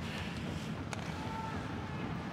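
Ice hockey arena ambience during live play: a steady wash of crowd and rink noise, with one sharp click about a second in, like a stick or puck strike.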